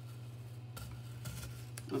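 Painter's tape being peeled off the back of a glass tray: a few faint, short crackling rustles about a second in and a small click near the end, over a steady low hum.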